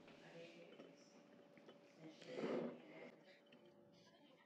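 Mostly near silence, room tone, with one short breath from a person about two and a half seconds in.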